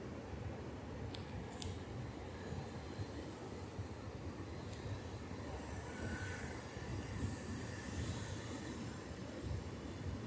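Ocean surf breaking and washing on the beach, heard as a steady low noise, with wind rumbling on the microphone.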